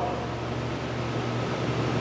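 Window air conditioner running, a steady low hum with a faint hiss.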